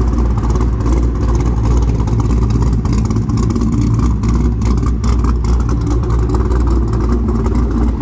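A modified 2010 Chevrolet Camaro 2SS's 6.2-litre V8 idling with a loud, deep, steady exhaust note.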